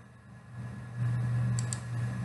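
A steady low hum fades in about half a second in and becomes louder about a second in, with a faint click near the end.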